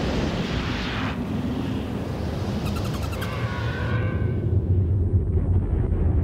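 Cinematic sound effect of an asteroid streaking in toward Earth. A rushing hiss in the first second is followed by a falling whistling whoosh about three seconds in, over a deep rumble that swells to its loudest near the end.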